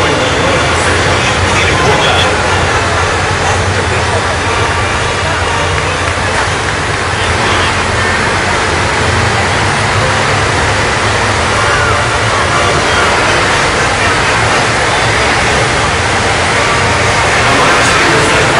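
Tracked self-propelled howitzers driving past in column, a steady loud engine rumble with track noise, over the chatter of a large crowd.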